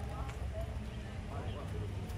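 Indistinct chatter of several tourists' voices over a steady low rumble.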